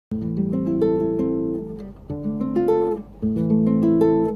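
Classical nylon-string guitar fingerpicked: three short phrases of arpeggiated chord notes and melody, each let ring and then stopped before the next. The phrases play a minor-key chord change from A minor toward D minor.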